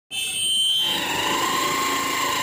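A steady, high-pitched electronic tone, several pitches held together like an alarm or buzzer. It starts abruptly, and its highest pitches drop away about a second in, leaving a single steady tone.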